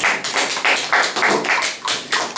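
A small group applauding: loud, uneven hand claps, several a second, each one distinct.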